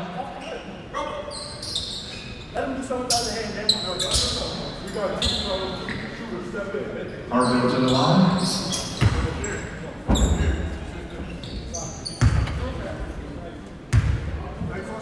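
Basketball bounced on a hardwood gym floor: a few separate thuds in the second half, the dribbles before a free throw, heard in a large, echoing gym.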